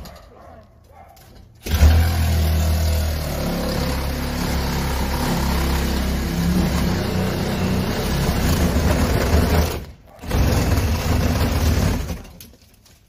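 Handheld power drill running steadily against a front door, drilling into it to force entry. It starts about two seconds in, cuts out briefly near ten seconds and starts again.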